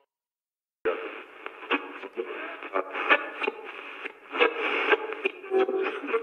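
After a short silence, thin, narrow-band audio as if heard over a radio starts, with a voice-like pattern and irregular sharp accents.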